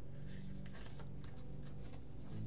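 Light scratchy ticks and rustles, several a second, over a steady low drone.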